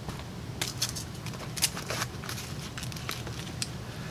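Light handling noise: about half a dozen small, sharp clicks and rustles as a metal multitool and its nylon sheath are handled.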